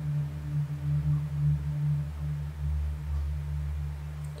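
Soft ambient background music: a low, steady drone of sustained tones.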